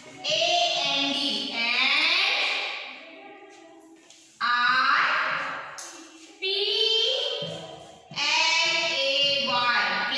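A high-pitched voice chanting words in a drawn-out sing-song, in four separate phrases with short pauses between them.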